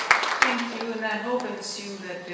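Audience applause, many quick claps, dying away about half a second in; a woman's voice then speaks at the lectern.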